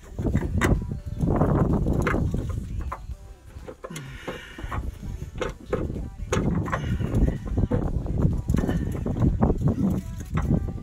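Irregular knocks, clicks and scraping as the plastic fuel filler neck tube is worked and pulled free from under the car, with a rumble of the phone being handled close by.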